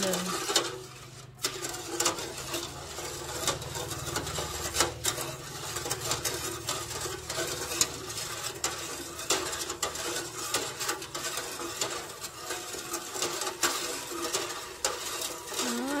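Metal ladle stirring sugar into hot coconut water in an aluminium pot, scraping and knocking against the pot's side in frequent irregular clinks, over a low steady hum. The sugar is being stirred until it dissolves into the syrup.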